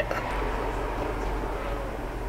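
Steady low hum under a faint hiss, with no distinct events.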